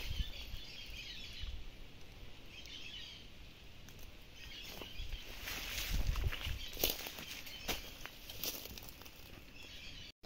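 Outdoor ambience under a fruiting jambolan tree: leaves rustling and handling clicks as the phone is moved through the branches, with faint high bird chirps and some wind rumble on the microphone.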